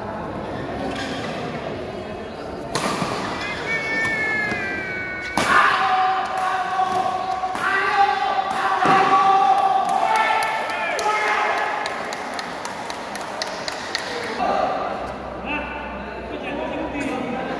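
Badminton rally in an indoor hall: sharp racket strikes on the shuttlecock, the loudest about five and eight seconds in, with long shouts from voices over the play.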